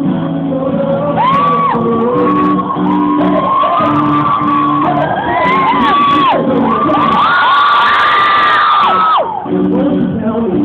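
Live pop/R&B performance with guitar accompaniment, overlaid by loud, high-pitched screaming and cheering from an audience close to the recording. The screams pile up most densely about seven to nine seconds in, then break off suddenly.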